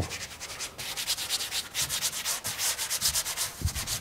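Quick, even rubbing strokes on a painted surface, several a second, like sanding or scrubbing.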